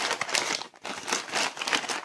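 Crinkling and rustling of a thin wrapping bag being handled in the hands as a camcorder is unwrapped from it, a run of irregular crackles with a brief lull partway through.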